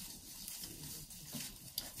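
Faint rustling of leaves and stems as ivy is worked into a hand-tied bouquet, with a couple of light ticks near the end.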